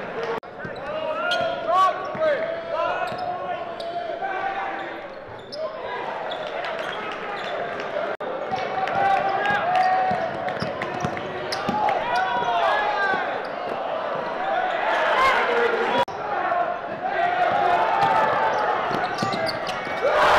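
Basketball game sound in an echoing gym: a ball dribbled on the hardwood, sneakers squeaking, and players and spectators calling out. The sound breaks off briefly twice where the footage is cut.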